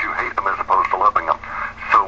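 Speech only: continuous talk-radio speech, with a faint steady hum underneath.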